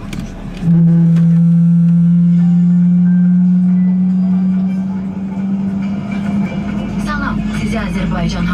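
A loud, steady low drone over the cabin public-address speakers starts suddenly about a second in and holds for several seconds before easing off, with a voice coming in over it near the end, the opening of the recorded safety announcement.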